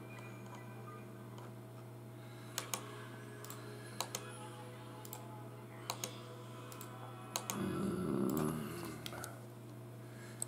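A few scattered computer-key clicks, several in quick pairs, over a steady low electrical hum; a brief louder low sound about eight seconds in.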